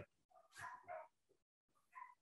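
Near silence, broken by two faint, short animal calls about half a second and a second in.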